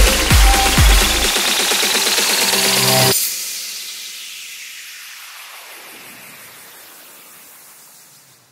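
Closing bars of a Bangla DJ remix in electronic dance style. A steady kick drum drops out about a second in, leaving a rising synth riser that cuts off abruptly about three seconds in. After the cut a falling noise sweep fades out as the track ends.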